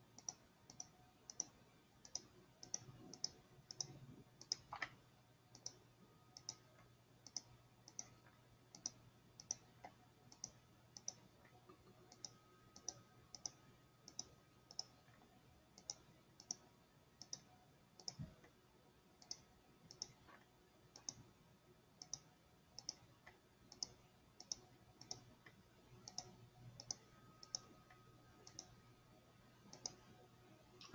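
Faint clicking from working a computer, fairly regular at roughly two clicks a second, over a low steady hum.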